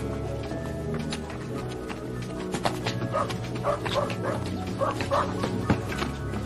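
Soundtrack music with a dog barking, a quick run of short barks in the second half.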